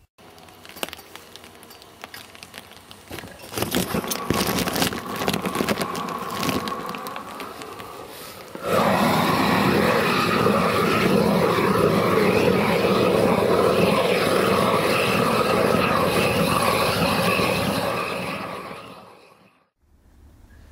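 Backpack propane flame weeder burning weeds. First comes irregular crackling and clicking, then about nine seconds in the torch opens up into a loud, steady rushing hiss that fades out near the end.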